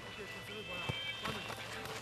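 Players' voices calling out across a dirt football pitch, mixed with running footsteps on the hard ground.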